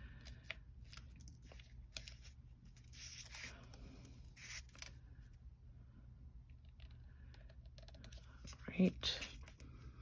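Faint paper rustling and small scratching clicks from fingers peeling the release backing off foam adhesive dimensionals and pressing a die-cut paper nest onto a card.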